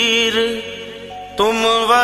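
Hindi devotional bhajan to Hanuman, sung with music. A held, wavering sung note fades out in the first half-second, the music drops quieter for about a second, and the singer comes in with the next line about one and a half seconds in.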